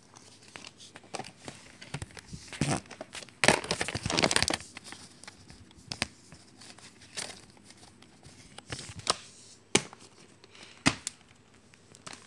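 Paper promotional inserts and a plastic VHS clamshell case being handled: intermittent paper rustling and crinkling, with a longer stretch of rustling about four seconds in and a few sharp clicks near the end.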